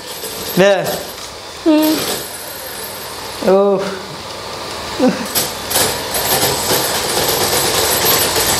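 Belt-driven RC drift car running across a wooden floor: its electric motor, cooling fan and belt drive whirring, with tyres sliding on the boards. It gets louder about five seconds in as the car speeds up.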